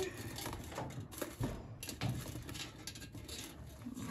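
Soft rustling and light scraping of hands handling a large rosette succulent and a small white pot, with a few faint knocks as the plant is tried in the pot.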